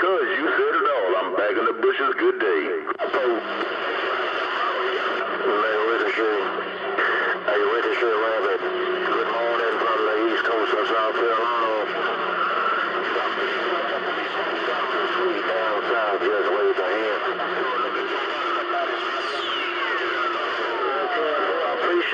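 CB radio receiving distant skip stations on channel 28: jumbled, hard-to-follow voices over steady static. Near the end a whistle sweeps steeply down in pitch.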